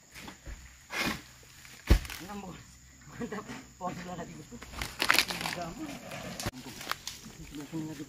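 A sharp, heavy thump about two seconds in, the loudest sound here, then a man's voice in short unclear vocal sounds on and off, with a few lighter knocks and clicks.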